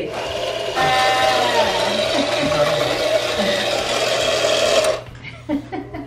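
Battery-powered toy money gun firing fake paper bills, its small motor whirring steadily for about five seconds, then stopping.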